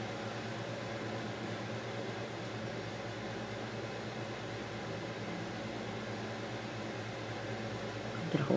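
Steady low hum with an even hiss, the background running of room machinery, unchanging throughout.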